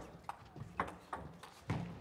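Table tennis rally: the celluloid ball clicks sharply off rubber bats and the table, four hits about half a second apart, with low thuds under some of them.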